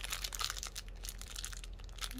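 Thin clear plastic bag crinkling as it is pulled open and peeled off a small plastic toy figure, a dense run of quick crackles.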